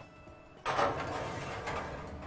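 A metal baking tray sliding into an oven along its rack, a scraping slide that starts suddenly about half a second in and fades off over the next second and a half.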